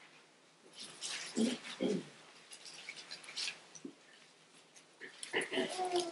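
Thin Bible pages rustling as they are leafed through, in irregular spells. Coughing begins just at the end.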